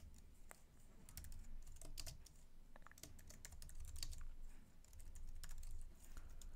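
Faint typing on a computer keyboard: scattered, irregular keystrokes.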